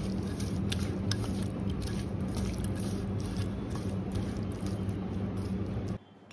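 A hand squishing raw prawns coated in chili powder and salt against a steel bowl, with many small wet clicks, over a steady low hum.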